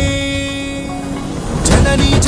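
Background music: a held chord sustains with the beat dropped out, then the drums come back in near the end.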